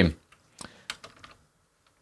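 A few light, short clicks as the pan arm of a SmallRig AD-01 fluid-head tripod is handled at its rosette clamp knob, the loudest just under a second in.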